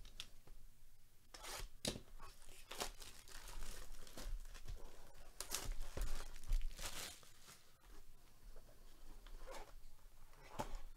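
Plastic wrapping being torn off a sealed box of trading cards and crinkled, a run of sharp rips and crackles that is loudest past the middle and lighter near the end.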